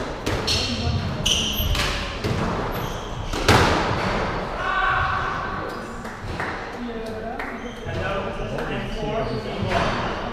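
A squash ball knocking in a squash court, each knock sharp and echoing in the hall, the loudest a single knock about three and a half seconds in, with a short high squeak about a second in. Voices talk in the hall through the second half.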